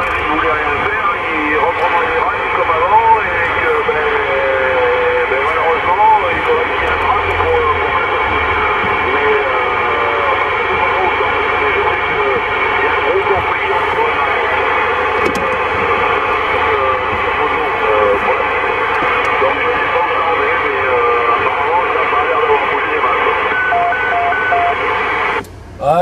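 President Lincoln II+ CB radio receiving channel 19 in AM, giving a steady jumble of overlapping, unintelligible voices and interference: heavy QRM. Near the end, three short beeps, then the received signal cuts off.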